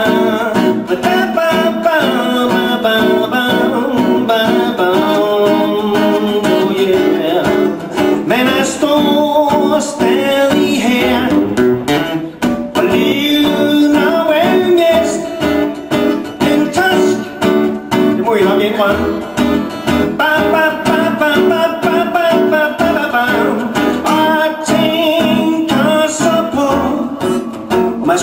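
A man singing live while strumming chords on an acoustic guitar.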